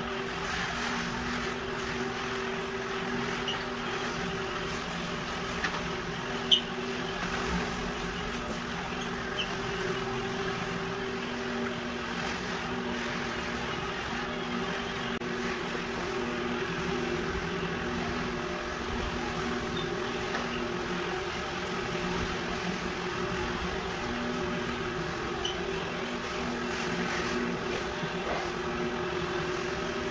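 Rotary floor buffer running steadily as it screens the old finish off a hardwood floor before recoating: a constant motor hum.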